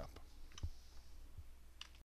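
A few faint clicks of a computer mouse being operated: one about half a second in and a quick pair near the end, over a steady low hum.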